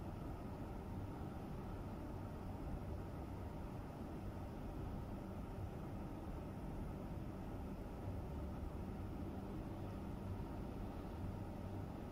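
Steady low background rumble with a faint hum, unchanging and without distinct events.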